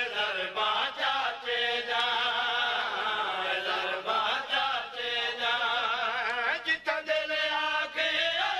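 A group of men chanting a Saraiki devotional qaseeda refrain in chorus, the voices held in long wavering notes, with a short break near seven seconds in.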